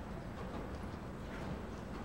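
Horse hoofbeats on soft arena dirt, heard faintly over a steady low background rumble.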